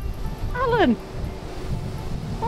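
A cat gives one meow, falling in pitch, about halfway through.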